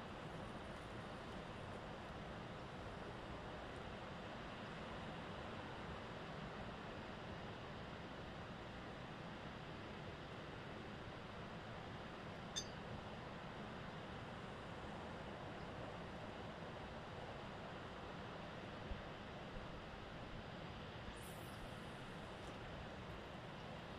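A faint, steady outdoor hiss with no distinct source, broken by a single sharp click about halfway through. Near the end comes a brief high swish as a fishing rod is cast.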